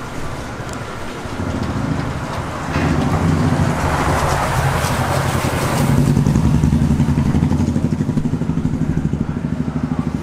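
A motor vehicle engine running close by in the street. A broader rushing swell, like a vehicle going past, rises about three seconds in and fades near six seconds. After that the engine keeps up a steady, evenly pulsing run.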